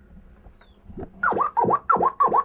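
Hip-hop record scratching: a sample pushed back and forth in a few quick strokes, about three a second, starting about a second in after a faint start.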